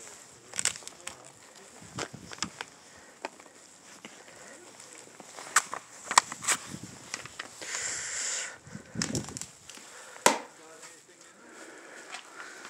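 Footsteps crunching on trampled snow and ice, then going onto a gritty concrete floor, with scattered sharp clicks and knocks and a short rustle about eight seconds in.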